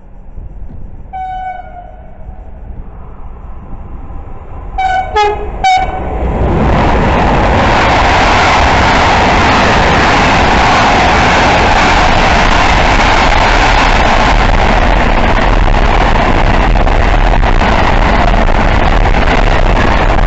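A freight train's horn sounds one note about a second in, then three short toots around five seconds. An intermodal freight train of container and tank-container wagons then passes close by at speed, with loud, steady wheel and wagon noise.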